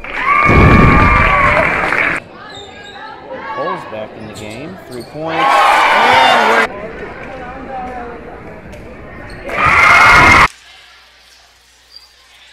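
Gym crowd cheering in three loud bursts, each cut off abruptly, with quieter crowd noise and voices in between.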